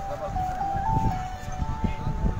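A simple electronic jingle: a tune of clear, held single notes stepping up and down, like a vending van's melody, over a low rumbling noise.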